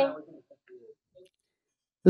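A drawn-out voice fading out at the very start, then a few faint short clicks and silence.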